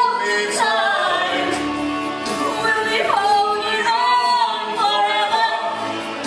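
Live stage singing over musical accompaniment: sustained, sliding sung notes with vibrato in a slow theatrical ballad.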